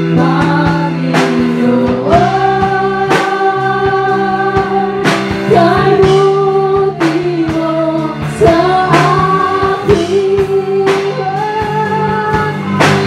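Live worship band playing a slow song: a woman sings long, held notes into a microphone over drum kit, bass, electric guitar and keyboard, with a strong drum or cymbal hit about every two seconds.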